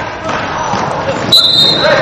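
Basketball dribbled on a hardwood gym floor amid the chatter of a crowd in a large hall, with a brief high-pitched tone about three quarters of the way through.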